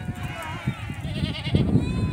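A large herd of goats bleating, several wavering calls overlapping, with a low rumble coming in about halfway.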